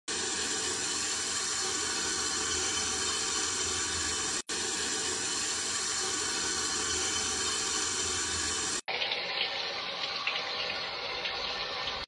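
Shower water running steadily, cut off sharply twice, about four and a half and nine seconds in; after the second break the hiss sounds duller.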